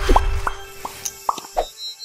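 Cartoon-style 'plop' sound effects from an animated TV logo ident: about five short rising blips in quick succession over a held note. A high, bright chime-like note comes in near the end.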